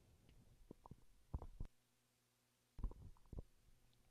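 Near silence with a few faint, short low knocks, a cluster about a second in and another near three seconds, from buttons being pressed on a home organ's control panel.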